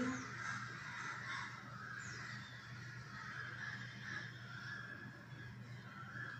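Faint bird calls in the background, irregular, with one high falling call about two seconds in, over a low steady hum.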